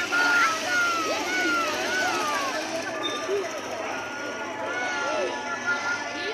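Chatter of a roadside crowd, with many voices, children's among them, talking and calling over one another, and motorbikes passing close by.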